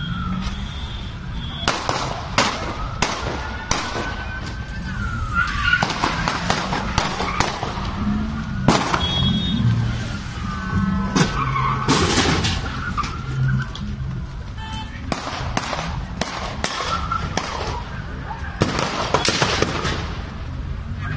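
Scattered gunshots in a street shootout: some two dozen sharp cracks at irregular intervals, bunched around two, seven, twelve and sixteen to nineteen seconds in, over traffic noise with a siren wailing at times.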